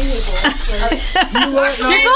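People talking and laughing, with chuckles mixed in.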